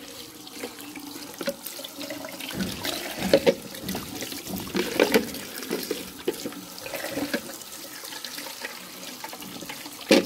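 Tap water running into a plastic basin while hands rub and splash kiwifruit about in a plastic bowl, with irregular louder splashes and knocks.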